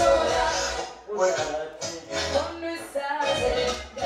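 Live stage music with vocals sung into a microphone over a sound system, in short phrases with a bass-heavy backing in the first second.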